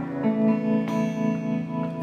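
Guitar chords strummed and left ringing between sung lines of a slow song, with a fresh strum just under a second in.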